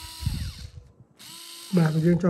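Xiaomi Mijia cordless electric screwdriver's small motor running with a high whir, cutting off under a second in.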